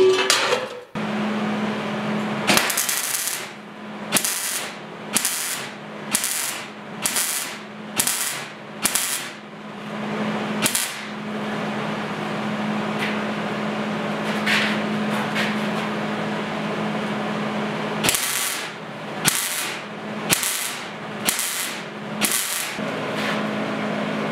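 Electric welding arc on steel checker plate: a string of short tack welds, each a brief crackling hiss, then a continuous bead of about seven seconds in the middle, then another string of short tacks, over the steady hum of the welder.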